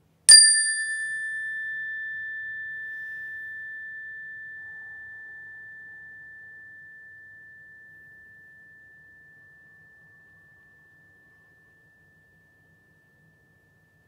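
Single-bar meditation chime, a metal tone bar mounted on a wooden resonator block, struck once with a mallet. It rings one clear tone that fades slowly and dies away after about ten seconds, while its brighter overtones fade within the first second.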